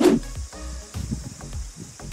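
A whoosh sound effect sweeping down in pitch right at the start, over a quiet background music bed.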